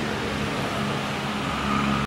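Steady road traffic noise, with the low hum of a vehicle engine growing a little louder near the end.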